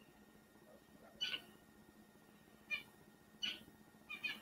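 Three short, faint, high-pitched animal calls over quiet room tone: one about a second in, then two close together near the end.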